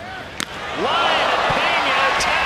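A sharp crack of a bat hitting a hard line drive, then a ballpark crowd's shouting and cheering that swells up within a second and stays loud.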